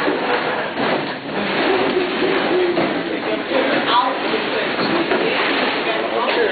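A roomful of people talking and laughing over one another, with chairs scraping and being pushed in as they stand up.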